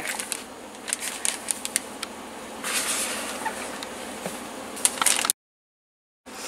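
Spatula scooping icing out of a plastic mixing bowl and into a plastic zip-top bag: soft scrapes, light clicks and plastic rustling. The sound cuts off abruptly about five seconds in.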